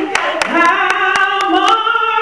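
A woman singing solo through a handheld microphone, holding long notes, with steady hand clapping about four claps a second.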